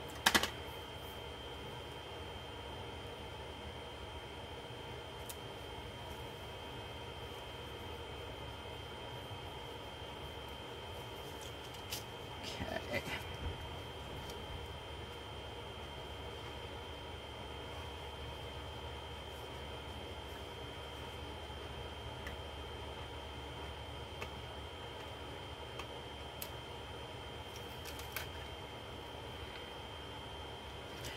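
Steady low room hum with a faint high tone, broken by short clicks and taps of paper and a handheld correction-tape dispenser being worked on a planner page. One sharper click comes right at the start, a small cluster about twelve seconds in, and a few light ticks near the end.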